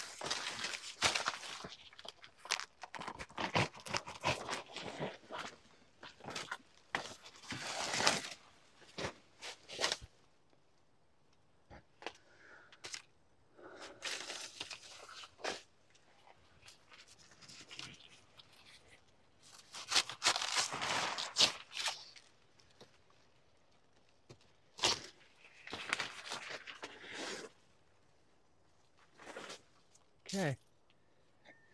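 Banana plant leaves and dry leaf sheaths being torn and stripped from the stalk, in irregular bouts of ripping and rustling with sharp snaps, with short quiet gaps between.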